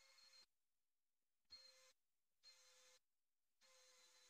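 Near silence, with four very faint short bursts of a cordless drill running, each about half a second long.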